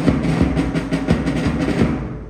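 Drums played by a school band in a fast run of rapid strokes. The burst stops shortly before the end.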